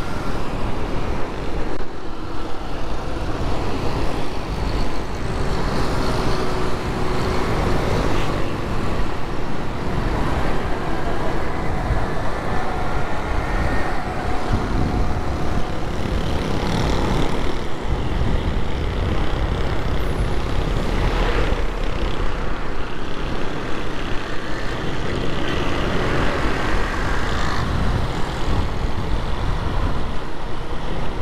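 Busy city street traffic: the steady rumble of cars, buses and trucks running and passing close by.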